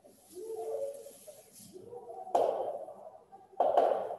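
Soft pigeon cooing, wavering and gliding, in the first half, then two short, louder bursts of noise, about two and a half and three and a half seconds in.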